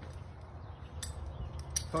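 A couple of faint clicks from a metal roof-anchor hook bracket being picked up and handled, over a steady low rumble.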